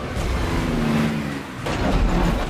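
Heavy off-road truck engine revving hard as the truck drives through shallow surf, with water splashing under the wheels and a louder surge of splashing near the end.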